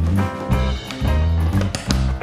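Background music, upbeat swing-style with a steady bass beat.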